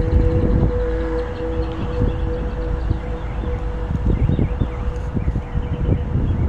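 Gusting wind buffeting the microphone. A steady two-pitch drone runs underneath; the lower pitch drops out about four seconds in and the upper one near the end.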